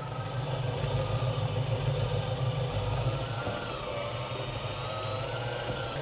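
Vintage electric stand mixer running steadily, its beaters working cream cheese as powdered sugar is added; a steady motor hum and whine whose pitch sags slightly about halfway through.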